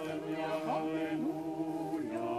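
A small group of voices singing Orthodox liturgical chant a cappella, with a held low note under upper voices moving between notes.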